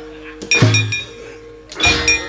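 Javanese gamelan accompaniment: two sharp metallic clangs, about half a second in and again near the end, typical of the dalang's kepyak plates, each ringing on over steady sustained gamelan tones.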